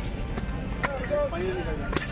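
Spades and hoes striking and scraping dry soil and weeds, with two sharp strikes about a second apart, over faint voices and a low steady rumble.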